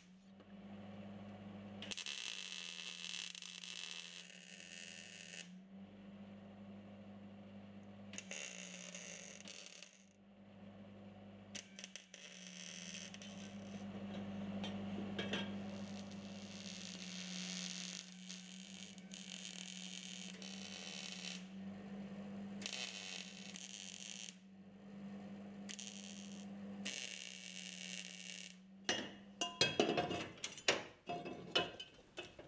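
Welding on a steel exhaust downpipe: a hissing crackle that starts and stops in bursts of one to three seconds, over a steady low hum. A few sharp knocks come near the end.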